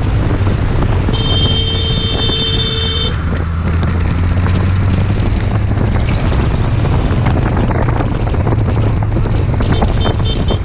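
Motorcycle engine running under wind noise on the microphone while riding. About a second in, a horn sounds steadily for about two seconds.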